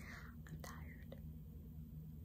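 A woman's soft whispered speech over faint room hum.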